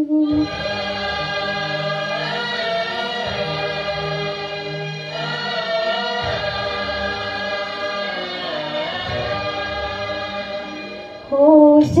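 Karaoke backing music: an interlude of sustained, choir-like chords over a bass line. A woman's singing voice comes back in near the end.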